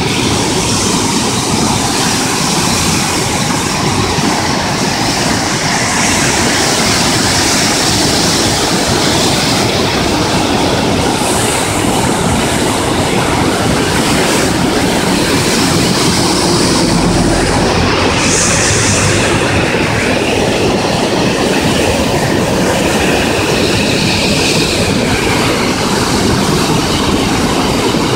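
River in white-water torrent rushing through a narrow stone-walled channel, a loud, steady roar of churning water.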